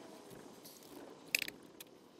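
Advair inhaler used through a spacer with a face mask: soft, quiet breathing through the mask, with a short sharp click about one and a half seconds in and a fainter one just after.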